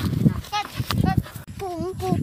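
Several short, high-pitched vocal calls that waver in pitch, over uneven low thumps from a phone being jostled while running.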